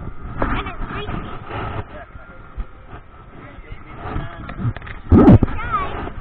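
Indistinct voices of people, with rustling and bumping of a body-worn camera rubbing against clothing and a tube. A heavy bump, the loudest sound, comes a little after five seconds in.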